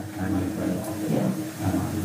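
Steady low hum with hiss, the background noise of a poorly set-up laptop-and-microphone recording, under a brief pause in the talk.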